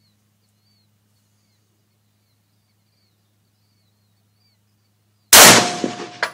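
A Century Arms GP WASR-10 AK-pattern rifle in 7.62x39mm fires a single shot about five seconds in: one sharp, very loud report with a tail that dies away over half a second.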